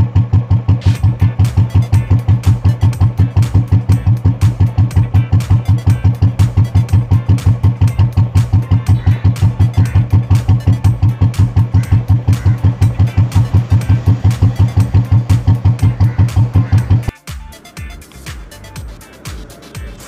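Royal Enfield single-cylinder engine idling with a steady, even thump of about five beats a second, cutting off suddenly near the end.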